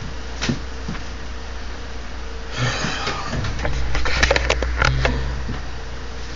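Rustling and several sharp clicks from handling a camera, starting about halfway in and lasting a little over two seconds, over a steady low hum.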